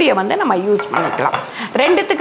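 Non-stick cast-aluminium cookware and a glass lid clinking and knocking as they are handled, most clearly about halfway through, under a woman's voice.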